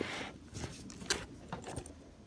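Rustling and a few light clicks from handling an insulated fabric lunch bag packed with plastic water bottles.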